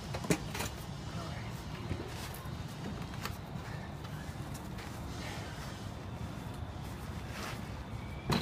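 A plastic pet kennel's wire door latching shut with a sharp click just after the start, followed by a few faint knocks. A steady low background noise runs underneath.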